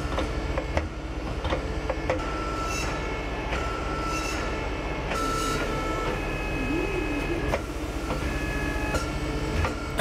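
Heavy diesel engine, most likely the bus's, running steadily at idle, with short high-pitched tones coming and going over it and a few clicks.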